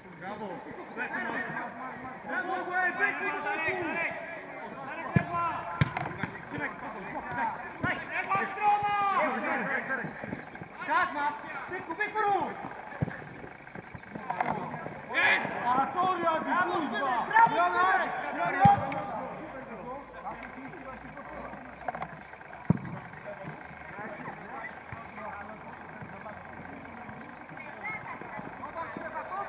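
Players' voices shouting and calling across a football pitch, busiest through the first two-thirds and quieter near the end, with several sharp thuds of the ball being kicked scattered throughout.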